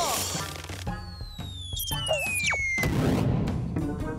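Cartoon sound effects over background music: a long descending whistle runs from about one second in to about three seconds in, then a crash-like impact.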